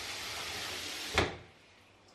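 Water running from a kitchen tap into a plastic cooler box. A single knock a little over a second in, after which the water stops.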